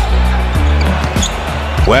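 A basketball dribbled on a hardwood court, a few short thuds, over background music with a heavy, steady bass line.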